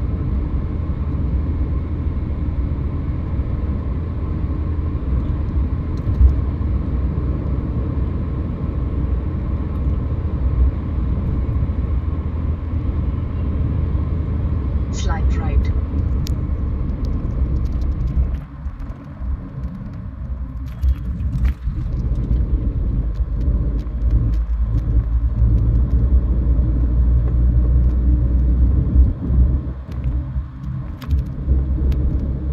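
Road and engine noise heard inside a car's cabin at highway speed: a steady low rumble. About two-thirds of the way in the rumble turns uneven, dipping and swelling, as the tyres move onto a rougher stretch of road surface.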